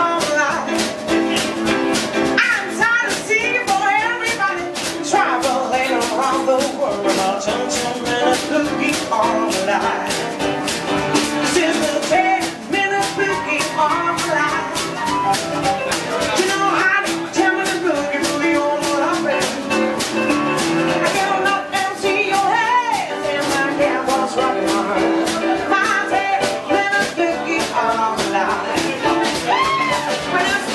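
Live rock-and-roll band playing: a woman singing with upright piano and a drum kit keeping a steady, driving beat on the cymbals.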